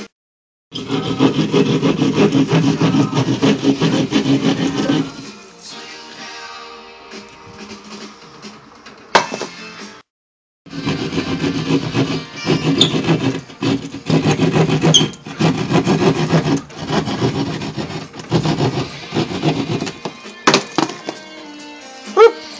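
Hand jab saw cutting through drywall in rapid back-and-forth strokes, over rock music playing in the room. The sawing eases off for a few seconds in the middle, and the sound cuts out briefly twice.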